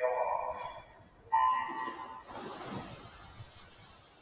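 Electronic swimming start signal, one steady beep lasting just under a second about a second and a half in, starting the race. It is followed by a hiss of splashing water as the swimmers dive in, fading toward the end.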